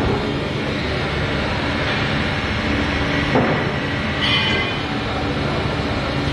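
Plastic injection moulding machine running with the mould clamped shut: a steady mechanical drone, with a sharp knock at the start and another about three and a half seconds in, and a brief high squeal just after.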